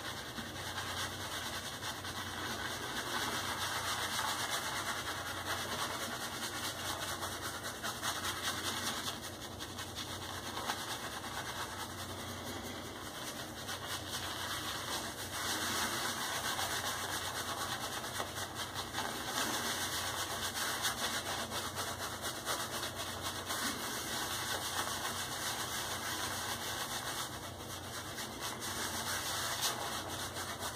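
Shaving brush scrubbing soap lather on a shaved scalp: a continuous wet rub of bristles on skin that swells and eases with the strokes.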